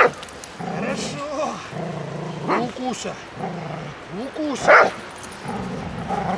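Australian cattle dog growling and whining as she grips a helper's padded sleeve in bite training. Two short, louder cries come about two and a half and nearly five seconds in.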